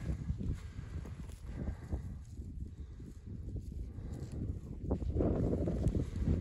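A cow gives a low moo about five seconds in, lasting about a second.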